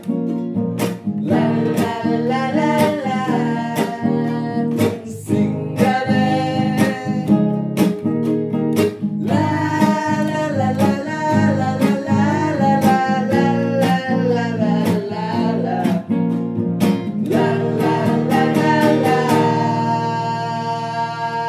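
A man and a woman singing a Sinhala song together, accompanied by a strummed acoustic guitar and a ukulele.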